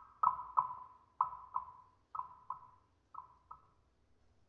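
A high marimba note struck twice in quick succession, repeated about once a second for four pairs, each pair softer than the last, dying away shortly before the end.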